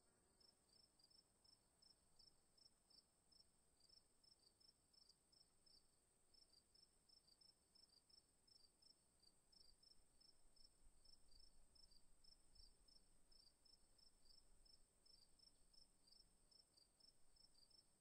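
Near silence: faint, high-pitched chirps repeating about two to three times a second, with a brief pause about six seconds in, over a faint steady high whine.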